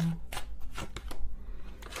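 A deck of tarot cards being shuffled by hand: a series of short, irregular card snaps and slaps.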